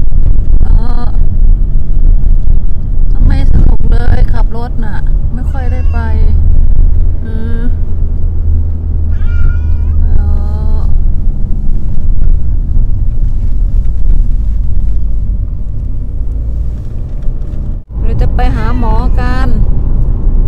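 A pet cat meowing repeatedly from inside a plastic carrier, about eight short meows at intervals of a second or two during the first half, over the steady low rumble of a moving car heard from its back seat.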